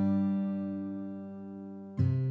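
Background music: a strummed acoustic guitar chord ringing and slowly dying away, with the next strum coming right at the end.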